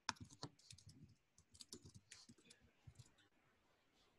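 Faint computer keyboard typing: a quick, irregular run of soft key clicks that dies out about three seconds in.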